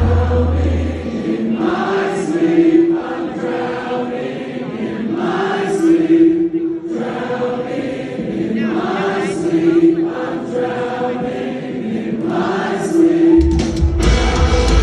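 Live metalcore band recorded from inside the crowd at a loud concert. About a second in the heavy low end drops out, leaving a quieter passage of sustained, choir-like singing in repeating phrases. The heavy low end comes back just before the end.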